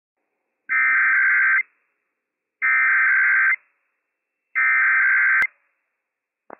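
Emergency Alert System SAME header: three identical bursts of warbling digital data tones, each a little under a second long and about a second apart. It is broadcast over NOAA Weather Radio WWF56 to open a Required Weekly Test. A sharp click sounds as the third burst ends.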